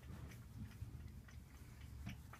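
Faint rustling and light ticking, close to the microphone, as a hand strokes a cat's fur, over a low rumble.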